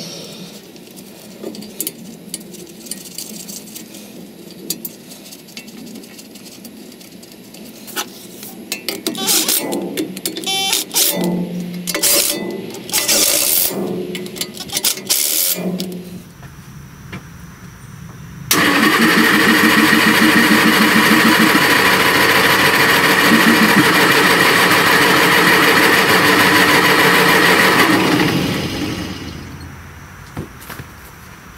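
Small gasoline pony engine on a Bucyrus Erie 15B shovel trying to start in uneven bursts, then catching and running steadily for about ten seconds before dying away.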